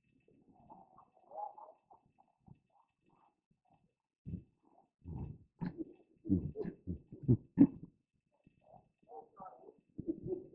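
A man laughing quietly close to a headset microphone: faint at first, then from about four seconds in a run of short, breathy bursts of stifled laughter.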